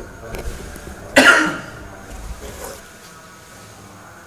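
A single loud, short cough from a man about a second in.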